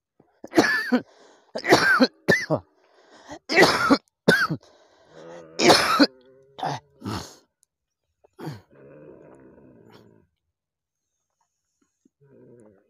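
A person coughing hard, about nine sharp, harsh coughs in quick, uneven succession, followed near the end by a fainter low voiced groan.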